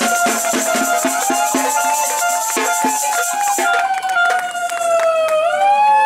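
Protest noise: hand rattles and shakers clattering in a fast rhythm that thins out about halfway through, under a siren-like wail that glides slowly up and down, with a second wail joining near the end.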